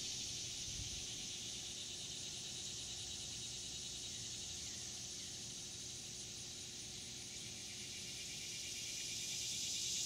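Steady chorus of insects, a high, finely pulsing drone that eases slightly in the middle and swells again near the end.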